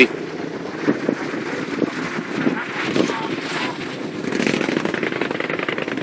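Busy street traffic of motorbikes and tuk-tuks: a steady mix of small engines running and passing, with a fast rattling putter.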